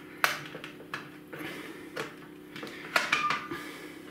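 Sharp plastic clicks and light knocks as AAA batteries are pushed out of the slots of an XTAR BC8 charger and handled, several in a few seconds; the loudest click comes about three seconds in, with a brief ring after it.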